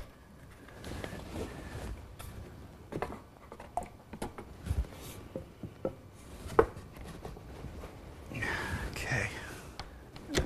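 Scattered light knocks and clicks of redwood parts being handled and fitted together during a glue-up, with a soft low thump about five seconds in and a sharper click shortly after. A soft rustling noise rises near the end.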